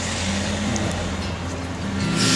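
Street traffic: a car engine running close by, a steady low rumble.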